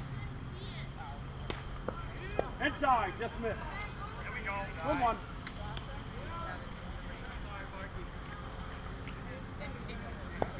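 Ballfield ambience: scattered distant shouts and calls from players, over a steady low rumble, with one sharp click about a second and a half in.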